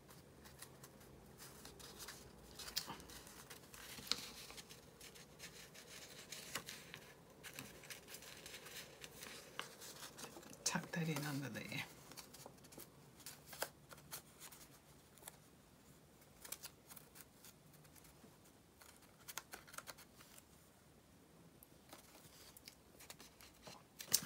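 Cut-out paper collage pieces being handled and shifted over a paper journal page: faint, scattered rustles and light taps, with a few snip-like clicks.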